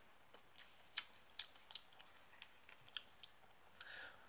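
Near silence with a few faint, scattered clicks from chewing a mouthful of donut.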